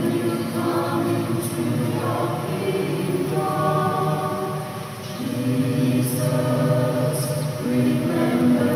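A choir singing a slow sacred piece in sustained chords that change every second or two.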